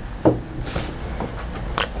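A pause with faint handling sounds as a small plastic box capacitor is set down on a table, a soft breath-like hiss a little before the middle and a faint click near the end.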